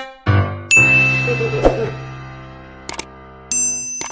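Outro sound effects for a subscribe animation: a bright bell-like ding rings out just under a second in and fades slowly, with a metallic clang about halfway. Then come two quick clicks and a second bright ding near the end.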